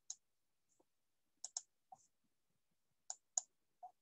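Computer mouse clicking: about seven short, sharp clicks in near silence, including two quick double-clicks.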